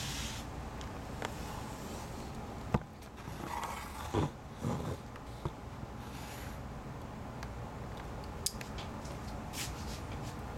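Handling noise as a camera is set down, then a few scattered clicks and knocks of someone moving about a workshop over a steady low hum. The sharpest click comes about three seconds in.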